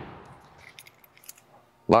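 A few faint, short clicks and light rattles of something handled, between stretches of speech.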